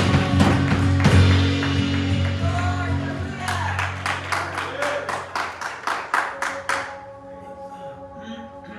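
Live worship band of drums, bass guitar and keyboard ending a song, the music dying away over the first few seconds. Then evenly spaced handclaps, about five a second, for about three seconds, over a soft held keyboard chord that carries on quietly near the end.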